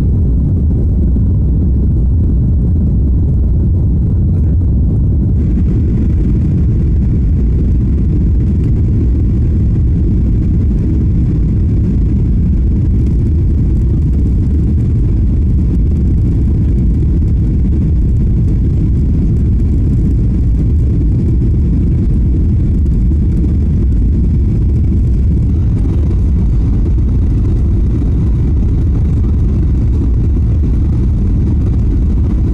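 Airliner cabin noise: the steady low rumble of the jet engines and airflow in flight, heard from inside the cabin. A little more hiss joins about five seconds in.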